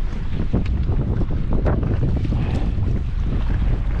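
Strong wind buffeting an action camera's microphone, with choppy water splashing and slapping around a kayak in a string of short, irregular hits.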